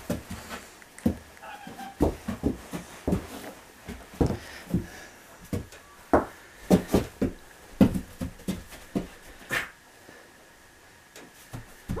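Donkey snuffling and nuzzling right at the microphone: irregular short breathy puffs and bumps, several a second, easing off briefly near the end.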